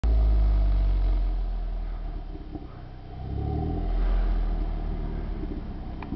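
Jeep Wrangler Rubicon engine pulling up a snowy trail: loud at first, easing off, then revving up again with a rising pitch about three and a half seconds in.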